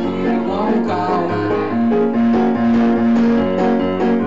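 Keyboard played live in a piano sound, steady held chords over sustained bass notes.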